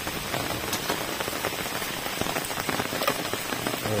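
Rain falling steadily, drops pattering on wet surfaces in a dense run of small ticks.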